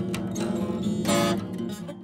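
Acoustic guitar being strummed, a few chords with a strong strum about a second in.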